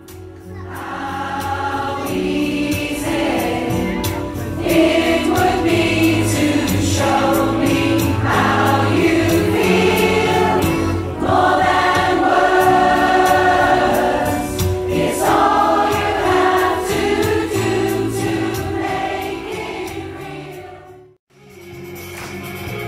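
A large, mostly female rock choir singing a song in harmony. The singing fades in over the first couple of seconds and cuts out about a second before the end.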